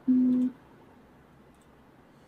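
A single short electronic beep: one steady low tone that starts right away and cuts off after about half a second.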